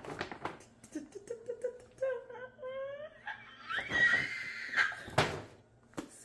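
A woman hums and vocalizes in a sing-song way, rising to a high, held excited squeal, while paper rustles and crinkles as she reaches into a paper shopping bag. There is a short loud burst near the end.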